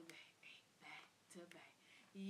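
Very faint whispering from a woman: a few short, breathy, hissing syllables.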